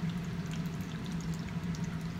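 Quiet room tone: a steady low hum under a faint hiss, with a few faint light ticks.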